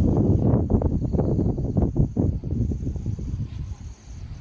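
Wind buffeting the microphone in irregular gusts, easing after about three seconds, with a faint steady high insect trill behind.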